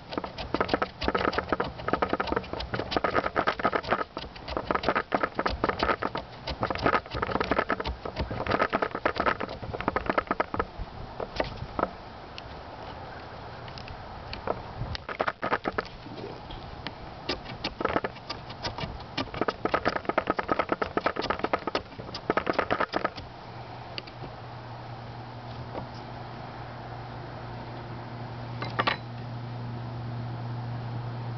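A small fixed-blade survival knife shaving thin curls from a wooden stick to make a feather stick: quick scraping strokes, dense for the first ten seconds or so, then sparser, stopping about 23 seconds in. After that a low steady hum takes over.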